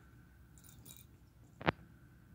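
A quiet room with a faint scratching rustle, then one sharp click about one and a half seconds in, from a cat pawing and clawing at things on the carpet.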